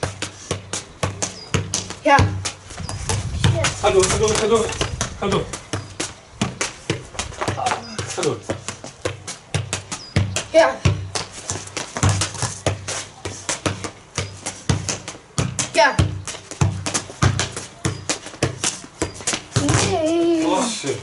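Repeated quick thuds of football touches, one ball juggled on the feet while a second ball is bounced, over background music with a steady beat.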